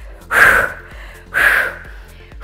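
A woman's sharp, forceful breaths out, two about a second apart, one with each rep of a side-plank dumbbell press under hard effort. Faint background music plays underneath.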